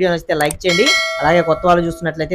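A bell chime sound effect rings out about three-quarters of a second in and holds steady, over a man talking.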